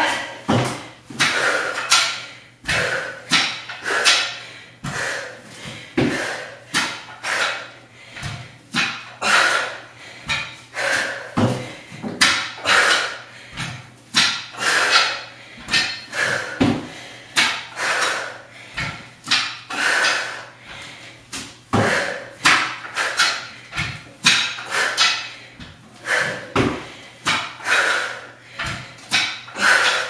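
A woman breathing hard in a quick, regular rhythm while rowing, with knocks of PowerBlock adjustable dumbbells set down on the floor mat.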